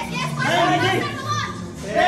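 Several people's voices talking and calling out over one another, with no single clear speaker.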